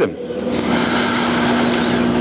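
A steady motor hum with an even low tone that starts just after speech stops and holds without change.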